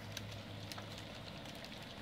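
Goldendoodle puppies lapping and smacking at a shared dish of blended puppy food: a faint patter of small wet clicks over a low steady hum.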